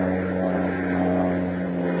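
A steady, low droning hum made of several pitched tones.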